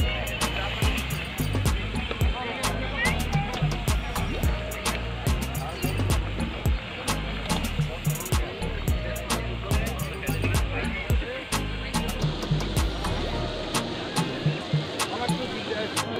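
Music with a steady beat and voices, over frequent sharp crackles of batter-coated seafood deep-frying in a wok of hot oil.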